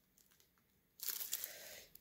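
Clear plastic packaging bag crinkling as it is handled, starting about a second in and lasting just under a second.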